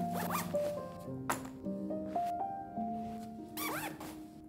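Background music with sustained notes, over which a zipper is pulled, early on and again near the end, as a fabric packing cube is zipped.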